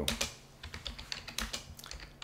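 Computer keyboard typing: a run of quick, uneven keystrokes as a terminal command is entered.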